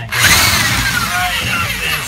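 Corded electric drill starting up just after the start and running loudly, spinning a rotary dryer-vent cleaning brush on flexible rods inside the duct.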